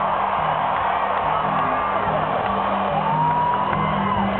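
A rock band vamping a low repeating riff under loud arena crowd noise, with a fan's high whoop about three seconds in.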